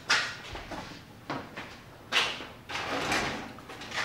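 A handful of knocks and scrapes as a plywood cutout and a metal box fan body are handled and set on a table saw top, the loudest about two seconds in.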